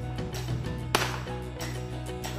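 A single shotgun shot about a second in, a sharp crack over background music with steady held tones.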